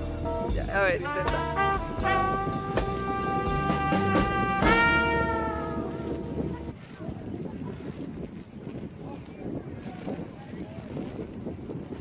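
Background music with a held, wind-instrument-like melody, which stops about six and a half seconds in. A quieter, hissy outdoor background fills the rest.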